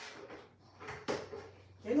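Hands working food in a stainless steel mixing bowl, giving a few short knocks and scrapes against the bowl, two of them close together about a second in.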